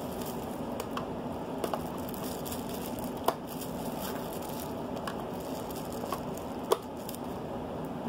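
A small plastic hand mixer and its plastic-wrapped beaters being handled: faint crinkling of the wrap with a few sharp clicks over a steady background hiss.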